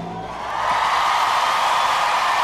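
A studio audience cheering and applauding as the song ends, the crowd noise swelling in about half a second in and holding steady.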